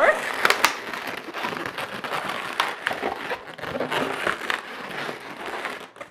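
Inflated latex twisting balloons rubbing and squeaking against each other as a small quick link balloon's nozzle is worked into the centre of a seven-petal balloon flower: a dense, continuous run of short crackles and squeaks.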